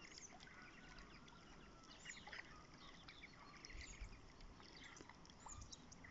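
Near silence with faint, scattered bird chirps.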